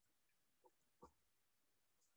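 Near silence: room tone, with two faint short clicks about halfway through, the second a little louder.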